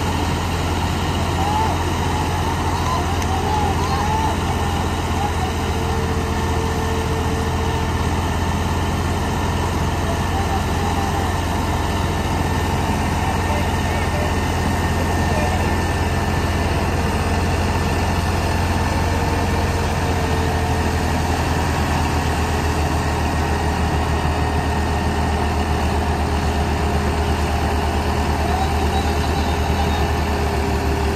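Diesel engines of two tractors, a Sonalika 750 and a New Holland 3630, running hard under load as they pull against each other in a tug of war. A steady low drone holds throughout, with faint voices of onlookers over it.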